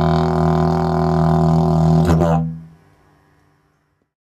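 Cottonwood didgeridoo pitched in C# playing a steady, loud drone rich in overtones, with a brief accent just after two seconds. The drone then stops about two and a half seconds in.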